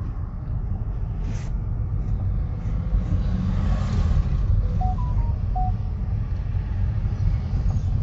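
Car interior road noise while driving slowly: a steady low rumble of engine and tyres heard from inside the cabin. A few short beeps at different pitches come about five seconds in.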